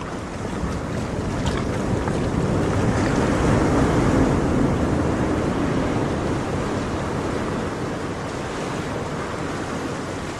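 Ocean surf: a steady rush of breaking waves that swells to its loudest about four seconds in and then slowly subsides.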